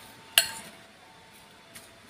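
Metal spoon clinking against a ceramic bowl while stirring a mashed-potato mixture. One sharp clink comes about a third of a second in, with a brief ring, and a softer tap follows near the end.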